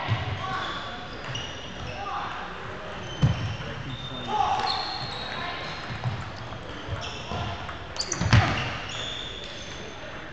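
Table tennis rally in a large, echoing gym: the ball clicks off the paddles and table in quick exchanges, with the loudest hits about three seconds in and again about eight seconds in, amid short shoe squeaks on the wooden floor and hall chatter.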